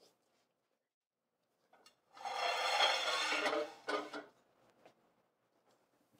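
Thin upholstery leather being rubbed and handled: a rasping rub lasting about a second and a half, starting about two seconds in, then a shorter one.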